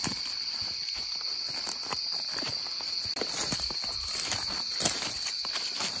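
Footsteps of people walking through grass and brush in a wood at night, uneven steps with a few louder ones, over a steady high-pitched chorus of night insects.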